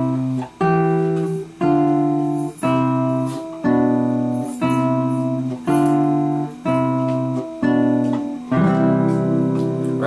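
Classical guitar playing a slow chord accompaniment: one chord plucked about every second, each ringing on until the next, with the last chord near the end held longer.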